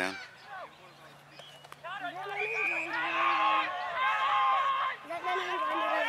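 Several people shouting and calling out across a football oval, long drawn-out calls that overlap, starting about two seconds in and pausing briefly near the five-second mark.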